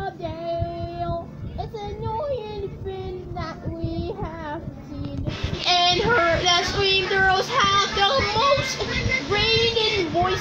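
A children's cartoon song: a child's voice singing with musical accompaniment, growing louder and fuller about five seconds in. It is played through a TV speaker and picked up from the room.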